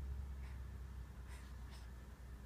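Faint breathing of a sleeping newborn, short soft breaths roughly once a second, over a low rumble from the handheld phone.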